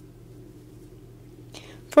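Faint steady background hum, then a short breath in and a woman starting to speak at the very end.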